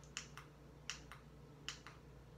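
Sharp clicks in pairs, about a fifth of a second apart, a pair coming roughly every three-quarters of a second, over a faint steady low hum.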